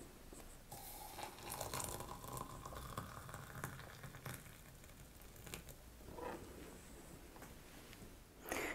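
Hot water poured from a kettle into a glass mug onto dried guelder rose flowers, faint, starting about a second in and tailing off a little after halfway.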